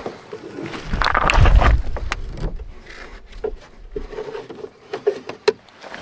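Rope and gear being handled at a canoe: rustling, with a louder burst about a second in, then a run of light scattered knocks and clicks, a few with a short hollow ring.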